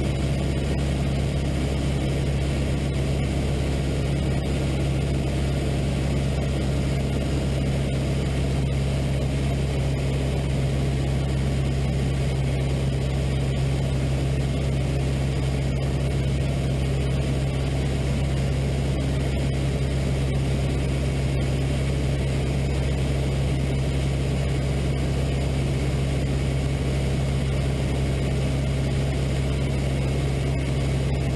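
Jodel D112 light aircraft's four-cylinder piston engine and propeller running steadily at cruise, a constant low hum heard from inside the cockpit.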